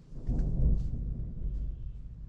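A low rumble of thunder that swells suddenly about a quarter second in, then slowly dies away.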